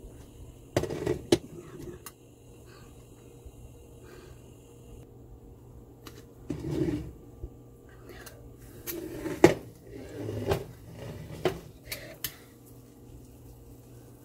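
A few scattered knocks and clatters of a utensil against a metal pot while sugar caramelizes in oil: the sugar is being stirred to a deep brown for pelau. There are long gaps between them.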